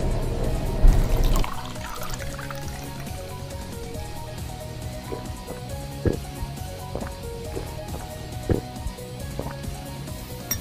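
A person drinking lemon tea straight from a plastic bottle, swallowing in gulps, over steady background music. A short loud sound comes about a second in.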